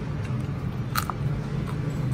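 Close-up chewing of crispy salmon skin: a few sharp crunches, the loudest about a second in.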